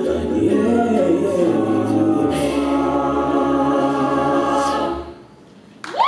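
Mixed-voice a cappella group singing the closing phrase and holding its final chord, which fades out about five seconds in. Applause bursts in at the very end.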